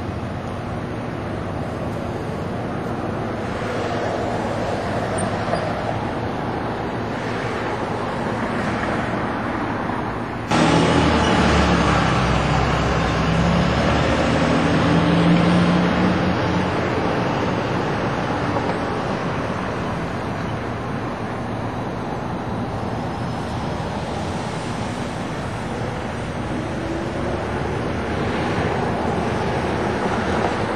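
Street traffic noise: passing cars, steady throughout. About a third of the way in the sound changes abruptly and gets louder, and a heavy vehicle's engine runs for several seconds.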